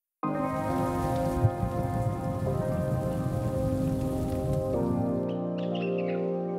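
Weather-bulletin jingle: sustained chords with a rain sound effect laid over them, starting suddenly just after a moment of silence. The chords shift twice, and the rain stops about five seconds in while the chords carry on.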